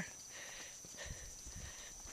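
Faint, soft footsteps on dry dirt, a few low thuds around the middle, over a steady faint high-pitched whine.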